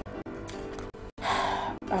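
Soft background film music with steady held notes; a little over a second in, a person sighs, a breathy exhale lasting about half a second and louder than the music.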